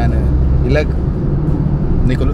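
Car cabin noise: a steady low engine and road rumble heard from inside the car, with a few short words spoken over it.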